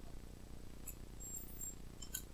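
Quiet room tone with a faint low hum and a single faint click about a second in, from a computer mouse button.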